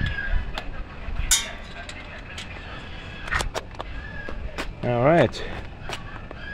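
Scattered sharp clicks and knocks, with a short bright scraping burst about a second in and a man's voice calling out briefly near the end.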